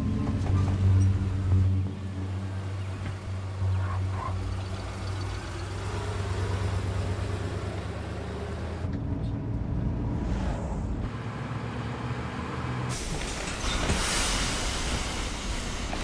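An old pickup truck's engine running, with background music fading out over the first few seconds. A louder hiss comes in near the end.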